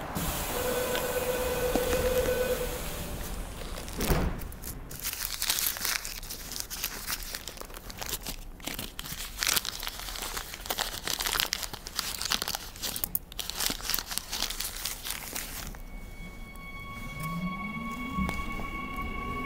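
A small paper envelope crinkling and rustling as it is handled and opened, in dense irregular crackles for about twelve seconds. Near the end, steady tones and a rising electric whine from the train's motors come in as it pulls away.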